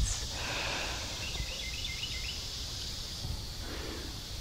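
Quiet outdoor ambience: a steady low rumble with a faint high hiss, and a short run of small bird chirps about a second in.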